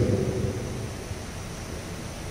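The last word of a man's speech fades away about half a second in, leaving a steady low hiss of background room noise.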